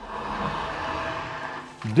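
Stainless-steel autoclave pressure cooker slid across a wooden tabletop: a steady scraping rumble about a second and a half long.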